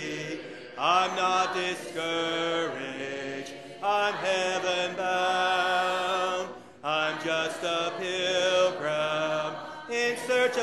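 A congregation singing a hymn a cappella, many voices with no instruments, in sustained phrases with brief breaths between them.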